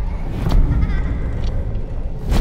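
Horror-trailer sound design: a deep, steady rumble with a sharp hit about half a second in and a fainter one about a second and a half in.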